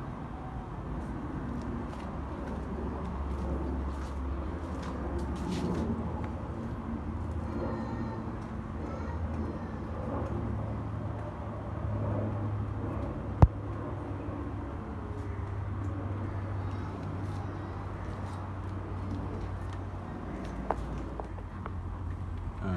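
Steady low background rumble with faint scattered handling noise, and one sharp click about halfway through, with a smaller click near the end.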